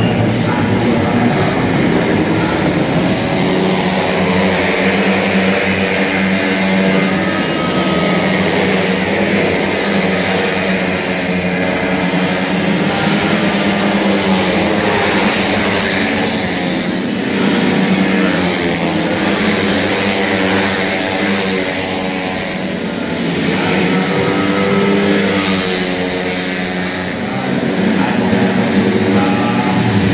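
Several racing 150 cc automatic scooters' engines revving together as they run through the corners. The engines overlap, each rising and falling in pitch as the throttles open and close.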